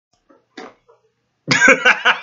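A man bursts out laughing about one and a half seconds in: a loud, sudden outburst breaking into quick repeated pulses of laughter.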